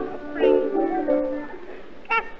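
Instrumental accompaniment playing a short phrase of a few held notes between sung lines, fading near the end, in a 1933 live recording.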